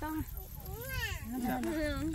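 Voices talking, with one high-pitched call that rises and falls about a second in.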